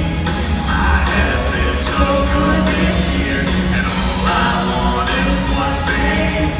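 Live band music with a steady beat and strong bass, an upbeat pop Christmas song played over a concert PA.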